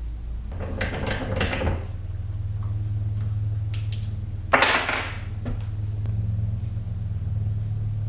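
Short handling noises from a PVC end cap being picked up and turned in the hands, once about a second in and again, louder, about four and a half seconds in, over a steady low hum.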